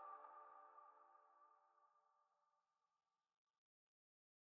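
The fading tail of the outro music's last chord: a few held tones dying away, gone to silence about two seconds in.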